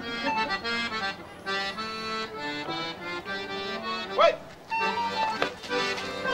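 Accordion playing an Occitan folk dance tune, a steady run of melody notes, with a brief voice calling out about four seconds in.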